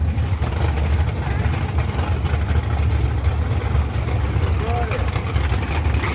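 Drag race cars' engines running in a steady, loud low rumble, with faint voices briefly about five seconds in.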